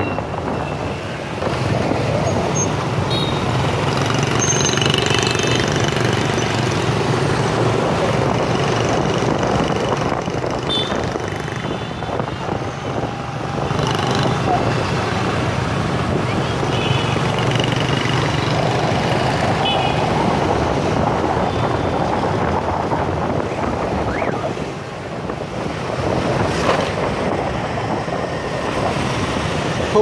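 Dense motorbike traffic heard from a moving motorbike: a steady mix of small scooter engines and road noise. Short high-pitched tones cut through a few times.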